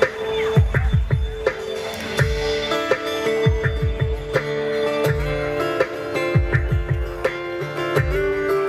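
Live rock band playing an instrumental passage with no singing: strummed acoustic and electric guitars over bass and drums, with a steady kick-drum beat.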